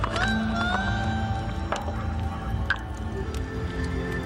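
Background music with sustained held tones, a few brief clicks among them.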